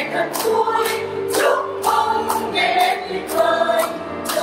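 A small church choir, mostly women's voices, singing a congratulatory song together, with hand claps keeping the beat about twice a second.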